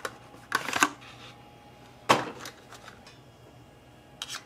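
Small cardboard SSD retail box being opened by hand: a scrape and rustle about half a second in, then a sharp click about two seconds in and a few lighter clicks as the drive is taken out.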